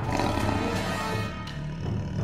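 A big cat's roar sound effect, starting suddenly, laid over background music.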